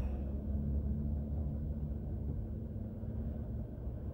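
Steady low rumble of a car's engine and tyres on the road, heard inside the cabin while driving, with a faint steady hum through most of it.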